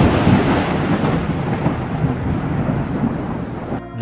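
A thunder-like boom sound effect for a flash transition: a sudden loud crack that rolls into a long rumble with hiss, slowly fading away.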